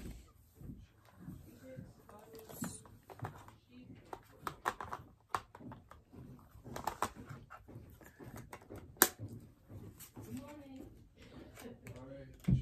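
Small plastic items being handled close up: a scatter of clicks and light knocks, with one sharp click about nine seconds in.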